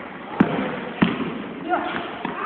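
Basketball bouncing twice on a hardwood gym floor, about half a second apart, each bounce ringing in the large hall. A short gliding voice or shoe squeak comes in near the end.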